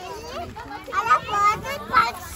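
Children's voices chattering and calling out over each other, with louder shouts about a second in and near the end.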